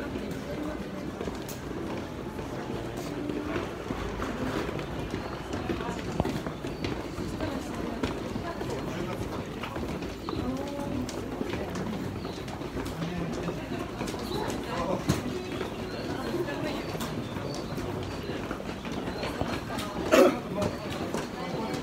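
Crowd of commuters walking through a busy train station: many overlapping footsteps on stairs and tiled floor, with indistinct chatter from the crowd.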